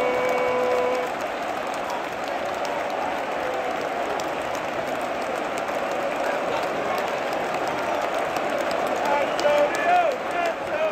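Large football stadium crowd cheering and clapping just after a home goal, a dense, steady mass of shouting voices with scattered claps. One voice holds a long note in the first second, and chanting voices rise near the end.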